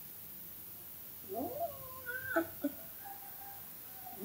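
Cat meowing: a few short calls that rise and fall in pitch, starting about a second in.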